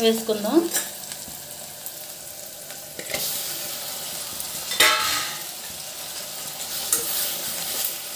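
Onions frying and sizzling in a stainless steel pressure cooker. Raw mutton pieces are tipped in, and the sizzle flares up sharply about three seconds in and again near five seconds. A spoon stirs the mix.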